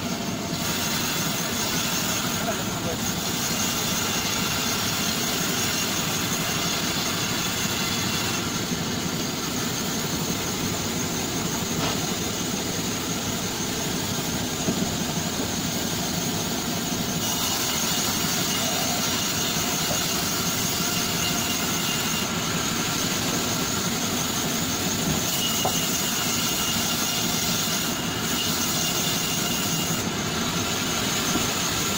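Large sawmill band saw running steadily as it rips a date palm trunk lengthwise, a constant dense whir with high whining tones that come and go as the blade cuts.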